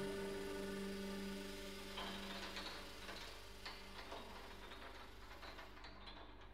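Quiet contemporary chamber music for flute, clarinet, violin, viola, cello and piano: a soft held low note fades out, and sparse light clicks and taps start about two seconds in.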